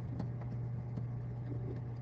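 A steady low hum with faint scattered clicks.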